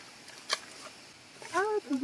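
A single sharp knock about half a second in, from a digging tool striking stones in a muddy bank, over a faint steady hiss, then a woman's voice speaking briefly near the end.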